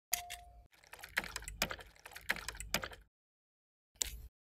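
Crisp clicks and crackles of an ASMR handling sound effect, with a brief squeak near the start and a few louder clicks about half a second apart. It cuts off about three seconds in.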